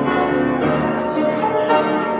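Piano playing slow closing music, its chords held and left to ring over one another.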